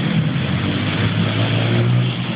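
Street traffic: a car engine running close by over steady road noise, its low hum growing stronger in the second half.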